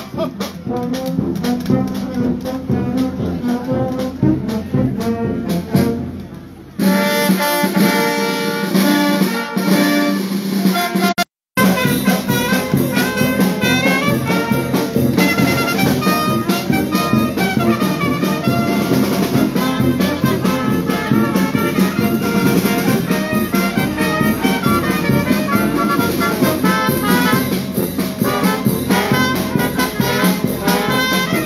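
Italian marching wind band playing a march, with brass such as tubas, euphonium and trumpets carrying the tune. The sound changes abruptly about seven seconds in and cuts out completely for a moment about eleven seconds in.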